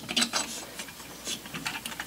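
Small brass and steel parts of a model steam engine clicking against each other as the spring-held cylinder is worked off by hand: a run of light, irregular metal clicks and ticks.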